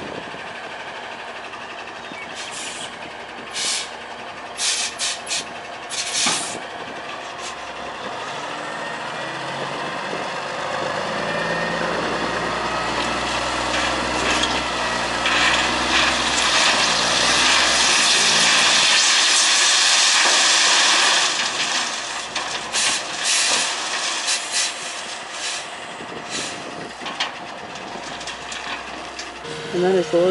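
Tandem-axle dump truck tipping a load of pit run gravel: its engine revs up steadily as the hydraulic hoist raises the bed, and the rock and dirt pour out with a loud rushing rattle that stops suddenly about 21 seconds in. Short sharp air hisses and clanks come in the first few seconds and again near the end.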